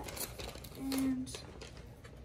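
Plastic handling sounds: a zip-top bag of soft-plastic worms rustling and light clicks of clear plastic tackle-box compartments as worms are placed in them. A short hummed voice sound about a second in is the loudest moment.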